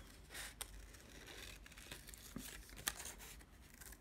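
Scissors cutting through black paper: a handful of faint, irregularly spaced snips with light paper rustle as the sheet is turned.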